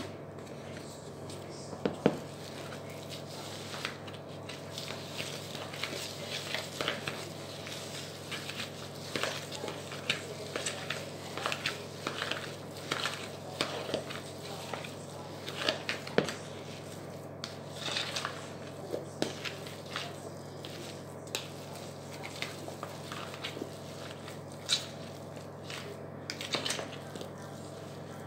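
Fingers squishing and kneading raw burger mince mixed with stuffing mix and hamburger helper in a plastic bowl, giving irregular small wet crackles and clicks, with a few sharper knocks against the bowl. A steady low hum runs underneath.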